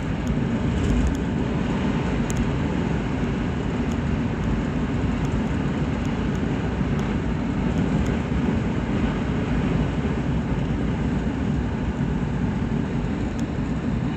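Steady cabin noise of a Ford Explorer cruising along a road: engine hum and tyre and wind noise, deep and even throughout.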